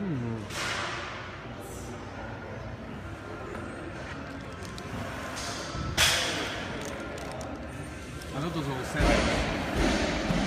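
Busy gym background of distant voices and equipment noise, with one sharp knock about six seconds in. Near the end there is a loud rustle close to the microphone as a foil pre-workout packet is handled.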